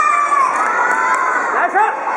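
Children shouting and cheering as a badminton rally ends and the point is won: one long held shout, then a burst of shorter rising and falling shouts near the end, over the general noise of a crowd.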